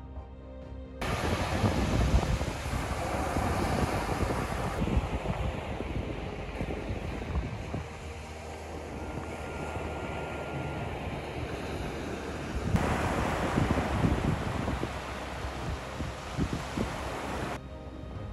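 Wind buffeting the microphone with surf washing on the shore behind it, in gusts that come and go. It cuts in about a second in after a little background music, jumps abruptly twice at edits, and gives way to music again near the end.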